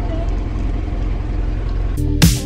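Car engine running with a steady low hum, heard from inside the cabin.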